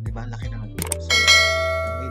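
A click followed about a second in by a bright bell chime that rings and fades out, the sound effect of a subscribe-button animation, over a steady background music track.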